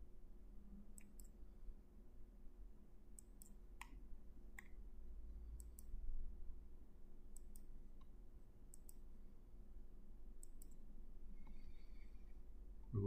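Computer mouse button clicking: about fourteen short, sharp clicks, mostly in close pairs and irregularly spaced, over a faint steady hum.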